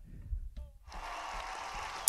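A quiet pause: faint studio room noise with a low rumble and a brief faint sound about a third of a second in, just before the band starts.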